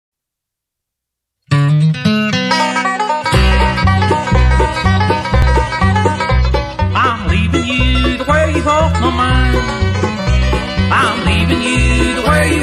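About a second and a half of silence, then a bluegrass band starts an instrumental intro: banjo, guitar, mandolin and fiddle. The bass comes in about three seconds in with a steady beat.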